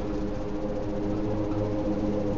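A steady low hum of several held tones, with a lower tone getting stronger just past the middle.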